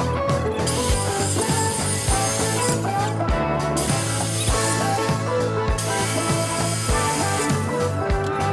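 A handheld power tool runs in three spells of about two seconds each, starting and stopping sharply, over background music with a steady beat.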